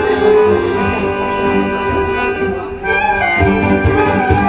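A live traditional Gypsy music ensemble playing: bowed violin, accordion and flute over guitar and percussion. The music dips briefly near the end, then low drum strokes come back in.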